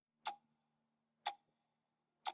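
Two faint, sharp ticks about a second apart, part of a slow, even ticking, over a very faint low hum.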